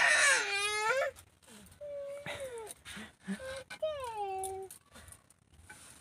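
A toddler whining and crying: three drawn-out wails, each falling in pitch, with a short whimper between them. The first wail is the loudest.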